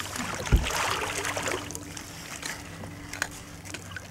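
A boat engine hums steadily while water sloshes and splashes at the hull around a large halibut held alongside on a gaff. There is one heavy thump about half a second in, followed by about a second of splashing.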